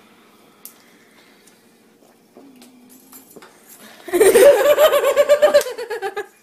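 A person laughing loudly close by: a quiet room, then about four seconds in a rapid run of high-pitched laughter that lasts about two seconds.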